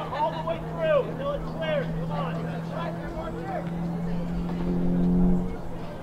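Players' shouted calls across a soccer field, over a steady low vehicle engine hum that grows louder about five seconds in and drops away just before the end.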